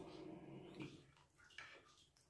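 Faint sounds of a toddler eating: a soft, steady low hum for about the first second, then a few light scrapes and clicks of a spoon in a wooden bowl.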